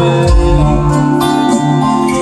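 Live acoustic band music: acoustic guitars and keyboard playing a steady passage of held chords, with little or no singing.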